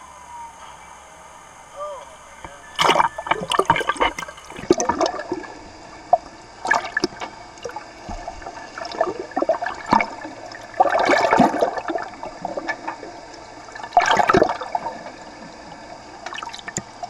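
Water bubbling and sloshing around a camera as it goes under the sea surface, in loud bursts every second or two from about three seconds in.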